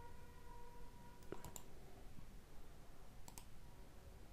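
Two faint computer mouse clicks about two seconds apart, each a quick double snap of button press and release.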